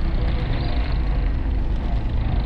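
Car driving along a dirt road, heard from inside the cabin: a steady low rumble of engine and tyres with road noise.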